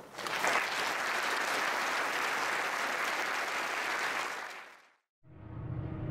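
Audience applauding, fading out after about four and a half seconds. Near the end, music fades in.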